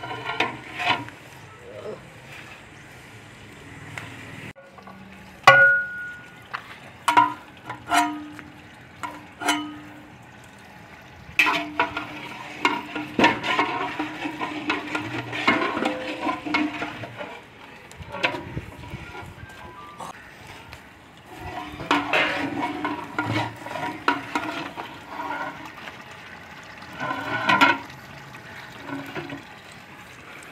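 Long metal ladles knocking and scraping against large cooking pots (deghs) as the food is stirred: several sharp, ringing clanks between about five and ten seconds in, then longer stretches of scraping and stirring, with another clank near the end.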